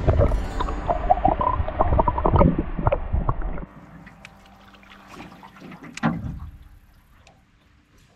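Muffled rushing and gurgling of water around a camera held underwater while a fish is released, loud and low for about three and a half seconds. It then cuts suddenly to quieter water and small knocks from an aluminium boat drifting on the river, with a brief louder burst about six seconds in.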